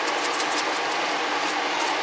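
A salt shaker is shaken over a pot of spinach, giving a run of quick, crisp rattles over a steady background hiss of the cooking.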